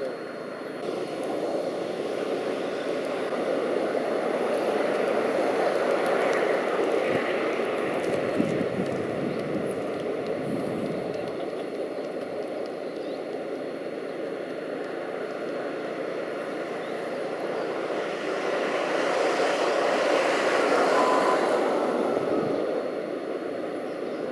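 Road traffic: broad tyre and engine noise of vehicles going by, swelling and fading twice.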